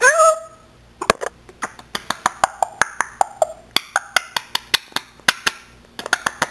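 African grey parrot giving a short call, then a long, regular run of sharp clicks, about four or five a second.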